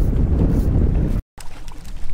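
Strong wind buffeting the microphone with a loud, gusty rumble that cuts off suddenly a little over a second in, followed by quieter, steadier noise.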